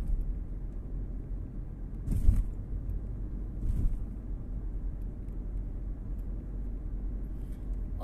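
Steady low rumble of engine and tyre noise inside a moving car's cabin. Two brief louder rushes of noise come about two and four seconds in.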